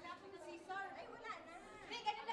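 Faint, indistinct chatter of several people talking at once.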